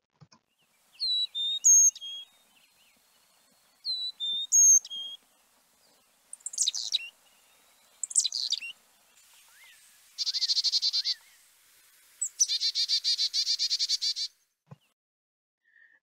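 Carolina chickadee, recorded: two whistled four-note "fee-bee-fee-bay" songs, then its "chick-a-dee-dee-dee" call, sharp falling notes followed by two runs of rapid buzzy "dee" notes, the chickadee's warning call.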